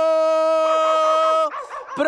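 A man singing one long steady note on a single syllable. It breaks off about one and a half seconds in, followed by a few shorter, softer wavering vocal sounds.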